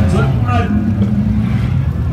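Engines of several figure-8 race cars running together on the track, a steady low drone without sharp revving.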